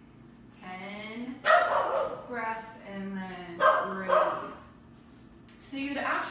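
A dog barking in a run of drawn-out barks that starts about half a second in and stops about a second before the end, with two louder barks among them.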